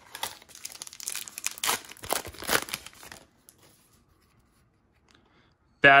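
Trading card pack wrapper being torn open and crinkled by hand, a dense crackle lasting about three seconds, then near quiet.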